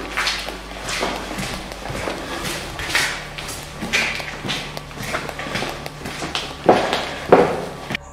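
Footsteps scuffing irregularly on a gritty concrete floor strewn with debris, over a faint steady hum, with two louder knocks near the end.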